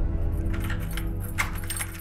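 Light metallic jangling and clinking, a quick cluster of small bright chinks from about half a second in, over low sustained music tones that are fading out.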